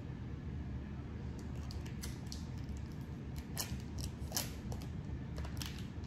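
Plastic bag crinkling as clay is worked out of it, in short scattered crackles over a low steady hum.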